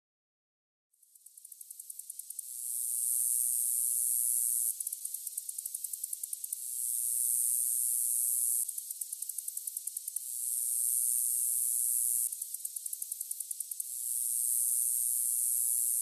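High-pitched night insect song that fades in about a second in, then alternates stretches of a steady buzz lasting about two seconds with stretches of rapid ticking, about five or six ticks a second.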